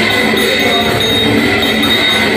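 Continuous ringing and jangling of ritual hand bells and hand cymbals over devotional kirtan music, dense and steady without a break.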